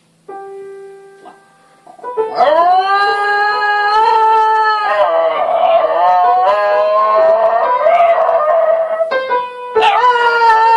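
A few short keyboard notes, then long, high howls in about three drawn-out calls, each gliding up at its start and wavering slightly, the last beginning near the end.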